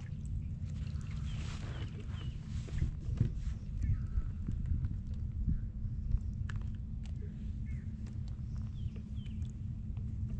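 Bass being landed by hand from a kayak: scattered small clicks and knocks of handling over a steady low rumble. A few short bird chirps come about a second in and again near the end.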